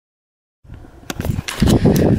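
Dead silence, then, just over half a second in, a handheld camera's microphone cuts in on an outdoor recording: a low rumble from wind and handling, with a few sharp knocks as the camera is moved, getting louder towards the end.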